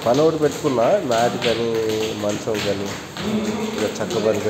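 A voice with drawn-out, sliding tones, some held for about half a second, over light taps of feet landing on a wooden floor during high-knee jumps.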